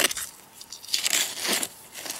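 Steel knife blade digging into gravelly soil, a few short crunching scrapes as it grinds against grit and small stones.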